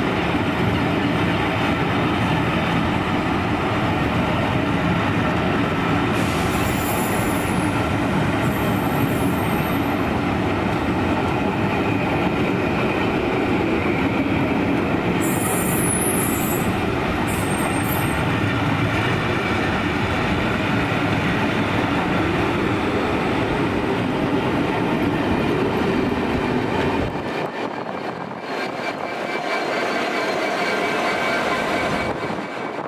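A train of passenger coaches rolling past close by: a steady rumble of wheels on rail, with high-pitched wheel squeals twice, about six seconds in and again around the middle. Near the end the noise dips briefly, then rises again as the Class 66 diesel locomotive at the rear draws alongside.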